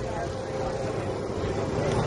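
Jet aircraft engine noise from a display jet flying past, a steady rush that grows slightly louder toward the end.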